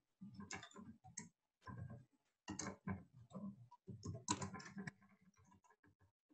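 Computer keyboard being typed on, faint, in short runs of rapid keystrokes with brief pauses between words, softer near the end.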